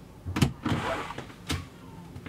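Wooden front door being unlatched and opened: a sharp latch click, a short rustling swish as it swings, then a second click about a second later.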